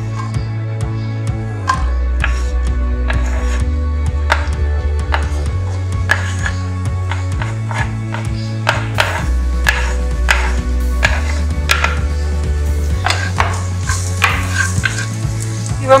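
Chopped onion hitting hot oil in a frying pan and sizzling, with irregular clicks and scrapes of a wooden spoon pushing it off a cutting board and stirring it in the pan. Background music with a steady bass line plays throughout.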